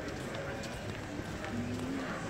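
Footsteps on paved promenade tiles, with indistinct talk from passersby.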